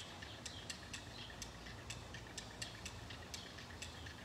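Faint, irregular light ticks, about three or four a second, over a low background hum.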